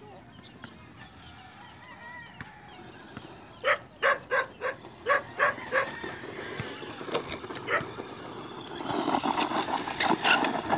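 An animal calling in a quick run of about eight short, evenly spaced calls a little under four seconds in, followed by scattered single calls. Near the end a louder, mixed noisy stretch builds up.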